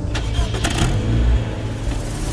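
Car engine starting up, with a few sharp clicks in the first second over a deep, steady low rumble.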